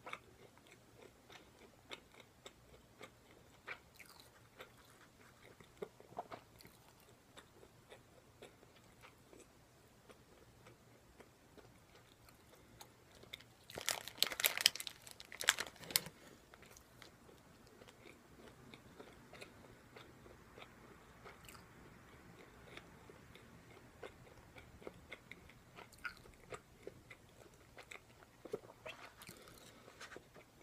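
Close-up chewing and biting into a deep-fried, breaded menchi katsu (minced-meat cutlet), with scattered small crunches of the crust throughout. About halfway through comes a louder, denser burst of crunching.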